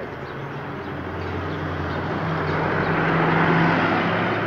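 A motor vehicle driving past on the street: a steady engine hum with tyre noise, growing louder toward the end.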